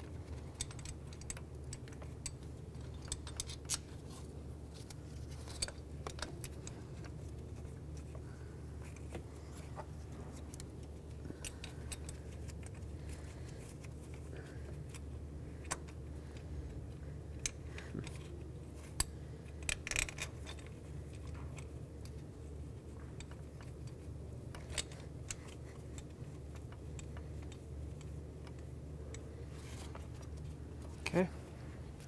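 Scattered small metal clicks and clinks of bolts being started by hand into a transmission bracket, with a cluster of louder clinks about twenty seconds in. A steady low hum runs underneath.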